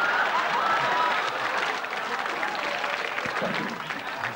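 Studio audience applauding and laughing, dying away toward the end.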